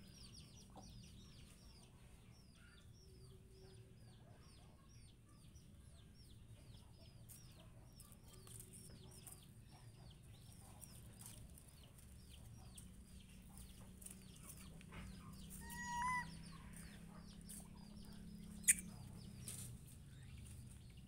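Faint bird chirping in the background: short, high, downward chirps repeating two to three times a second for the first half or so, then a louder short call about three-quarters in. A single sharp click near the end is the loudest sound.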